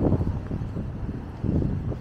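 Wind buffeting the microphone in two gusts, one right at the start and one about a second and a half in, over a low steady rumble of street noise.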